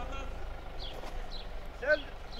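Quiet outdoor background with a steady low rumble and faint voices, then a voice starts speaking near the end.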